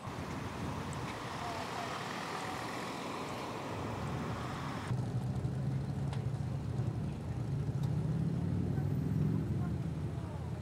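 Traffic noise from vehicles on a road, a steady haze with faint voices in it. About halfway it changes abruptly to a deeper, louder rumble.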